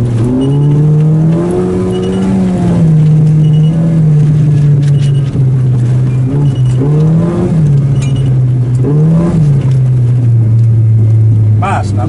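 Volkswagen Golf GTI four-cylinder engine, heard from inside the cabin while driving: it climbs in pitch about half a second in, holds, eases off, and gives two short rises and falls around the seven- and nine-second marks as the throttle is worked.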